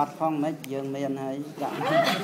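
People talking close by, with one voice holding a long, level-pitched vowel through the middle.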